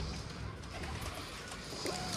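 Pigeons cooing quietly.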